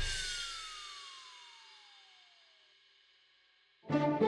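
A comic background-score sting: a single cymbal crash that rings and fades away over about three seconds, under a long falling whistle-like glide that stops a little under three seconds in.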